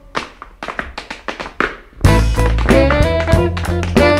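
Tap shoes clicking on a wooden dance board in a quick, irregular run of taps, with the band nearly silent. About two seconds in, the full band comes back in loudly.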